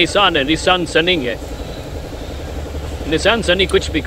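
A man talking over a Nissan engine idling with a steady low hum. He pauses for about two seconds in the middle, leaving only the engine.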